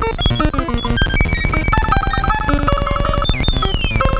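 Erica Synths Pico System III modular synthesizer playing a fast sequenced pattern of dense clicks and short stepped bleeps, its rhythm built from the sequencer, bucket-brigade delay and noise. A rapidly repeating high note runs through the second half, and a falling pitch sweep comes in near the end.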